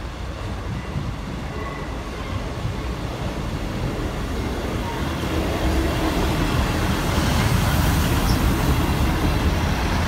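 East Midlands Trains Class 158 diesel multiple unit running over the level crossing, its engine and wheel rumble growing steadily louder as it comes up and passes close by, loudest in the second half.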